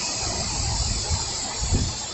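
Heavy rain falling onto standing floodwater: a steady hiss, with irregular low rumbling underneath.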